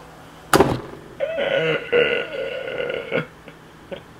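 A short, sharp throaty burst about half a second in, then a drawn-out, pitched vocal sound from a man's throat lasting about two seconds.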